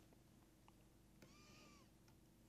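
Near silence, broken a little over a second in by one faint, brief high-pitched call of about half a second that rises slightly and falls away.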